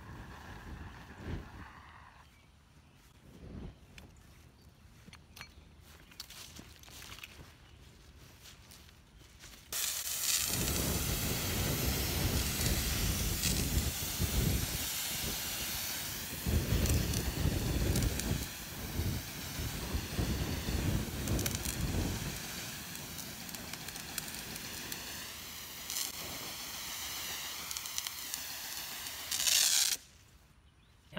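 Handheld mist nozzle on a hose hissing loudly as it sprays a polyphosphate fire-suppressant mist. It comes on suddenly about a third of the way in and runs until it cuts off at the end, with a low rumble under it for the first half of that.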